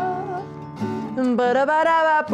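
Acoustic guitar strummed as accompaniment to a voice singing a melody; the singing drops away briefly about half a second in and comes back after about a second.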